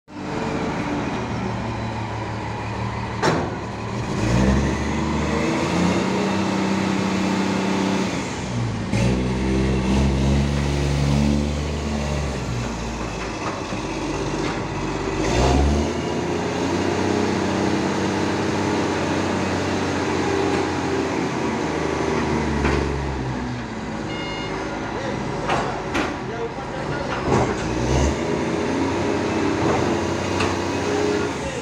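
Kalmar reach stacker's diesel engine revving up for several seconds at a time and dropping back to idle, over and over, as it works the boom to lift and stack a shipping container. Sharp knocks sound now and then.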